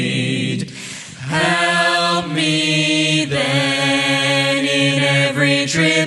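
Mixed group of men's and women's voices singing a hymn a cappella in close harmony. A held chord ends about half a second in, there is a short breath, then the voices come back in on a new sustained chord that moves through several chord changes.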